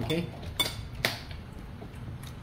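Cutlery clinking against a plate during a meal, with two sharp clinks about half a second and a second in and a few fainter taps after.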